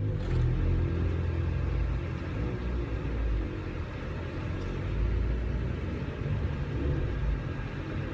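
Low, steady rumble of a car running and moving, heard from inside the cabin.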